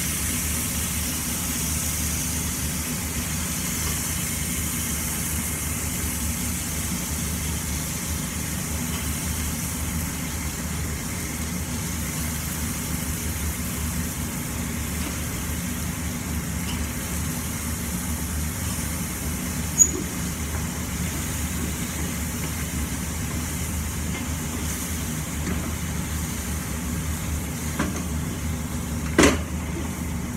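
Steady hum of a kitchen range-hood extractor fan, with a light sizzle from the frying pan. Two short sharp clicks of a metal utensil against the pan or pot, one about twenty seconds in and one near the end.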